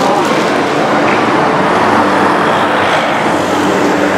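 Road traffic: a steady wash of car noise with a low engine hum underneath.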